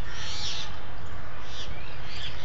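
Small birds chirping: short, high calls with quick pitch sweeps, a cluster about half a second in and another near the end, over a steady low rumble.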